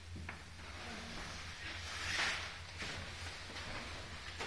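Quiet indoor room tone: a steady low hum with a faint click near the start and a brief swell of hiss about two seconds in.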